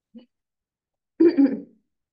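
A person clearing their throat once, a short loud burst about a second in, heard over a video-call connection.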